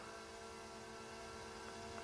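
A faint, steady hum made of several fixed tones over a light hiss.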